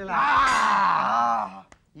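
A man crying out in one long, loud, wavering yell lasting about a second and a half, as a police lathi is swung at him, followed by a single sharp click.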